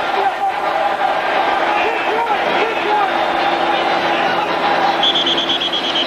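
Stadium crowd noise carried on a television football broadcast: a steady din with indistinct voices in it. A high, shrill, trilling whistle-like tone comes in about five seconds in.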